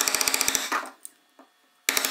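Hand chisel pushed along a groove in a wooden chair armrest, chattering as a rapid run of clicks in two strokes, one at the start and another near the end, with a short silence between.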